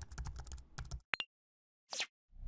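Keyboard typing sound effect: a quick run of key clicks for about a second, then a single sharper click. A brief swish begins right at the end.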